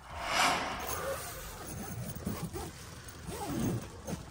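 Rustling and handling noise of someone climbing into a nylon dome tent, loudest about half a second in, then softer shuffling.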